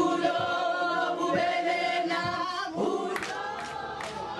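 A group of women singing together in chorus, with a few sharp hand claps near the end.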